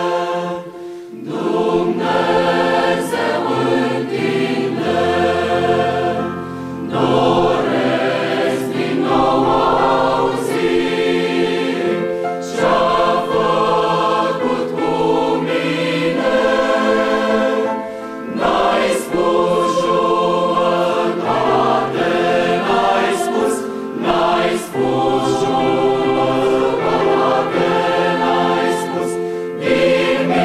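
Large mixed choir of men's and women's voices singing a hymn with piano accompaniment, in phrases with short breaths between them about every five or six seconds.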